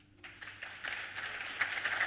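Audience applause starting a moment in and building louder, many hands clapping.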